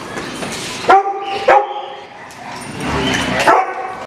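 A dog barking: two loud barks about a second in, half a second apart, and another bark near the end.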